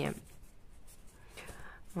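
Faint scratchy rubbing of fingers and palms against a foam modelling mat as it is handled, with a few soft ticks.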